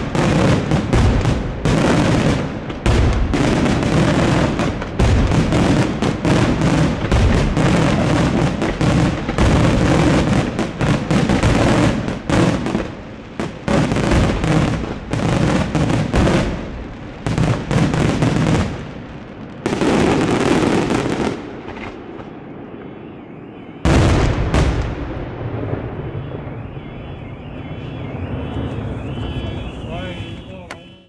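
Fireworks: a rapid, dense barrage of bangs and crackling reports that thins out about two thirds of the way through, then one last loud burst near the end that dies away.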